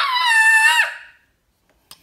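A child's loud, high-pitched cry or squeal lasting under a second, falling slightly in pitch and dipping sharply at the end.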